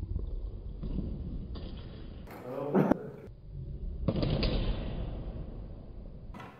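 Longsword sparring in a gym: a dull knock about four seconds in, followed by a short rush of scuffing and movement noise, with a brief laugh near the middle.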